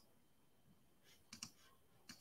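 Near silence with two faint, sharp computer clicks about one and a half seconds in, as the computer is operated to share the screen.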